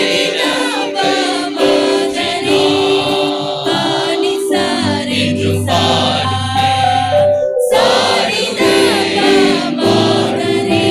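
A church choir singing a hymn over sustained accompanying notes, with a brief break in the sound about eight seconds in.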